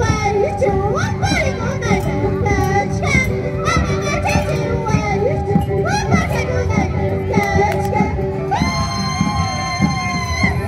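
Andean carnival music: high-pitched group singing over a steady drum beat, with a long held high note near the end.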